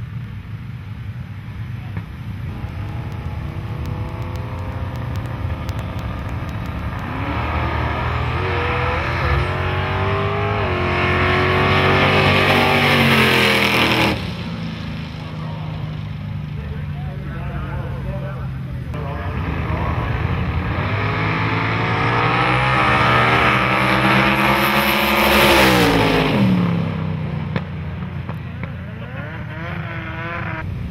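Two drag-racing passes by small-tire street cars at full throttle. The engine note climbs for several seconds and cuts off sharply about halfway through as the cars lift at the finish. A second pair follows, its engine note climbing again and then dropping away near the end.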